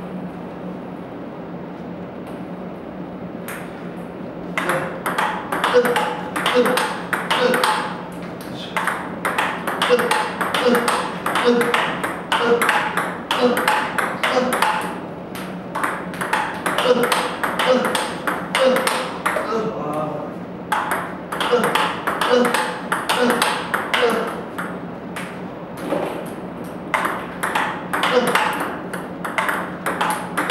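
Table tennis balls being hit by paddles and bouncing on the table in a multiball drill. The hits come in a quick, even rhythm starting about four seconds in, with a few short breaks between runs.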